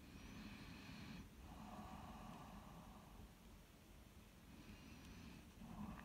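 Faint breathing close to the microphone: a slow breath in and out, then the start of another, over near silence.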